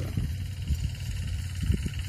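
Open-field outdoor ambience: a low, uneven rumble of wind on the microphone with a faint, steady high-pitched trill running underneath.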